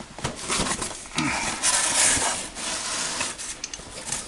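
A box cutter slitting the packing tape on a cardboard box and the flaps being pulled open, with crumpled newspaper packing rustling inside. The loudest, noisiest stretch comes between about one and two and a half seconds in, among scattered clicks and knocks.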